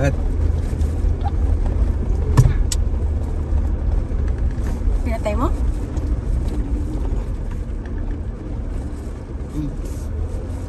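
Cabin sound of a Jeep Gladiator crawling along a gravel dirt track: a steady low rumble of engine and tyres. Two sharp knocks come about two and a half seconds in, the body jolting over rough ground.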